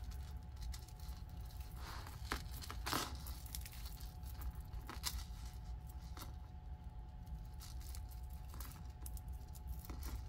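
Light scattered clicks and rustles of a tangled silver-tone two-strand chain necklace with small hammered metal discs, handled by fingers as it is being untangled. Under them runs a faint steady hum.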